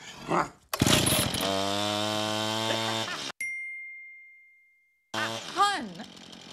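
A sudden loud blast of small-engine power-tool noise, a steady buzzing drone, stops abruptly after about two and a half seconds. It leaves a single high ringing tone that fades away over about a second and a half, and a voice gasps near the end.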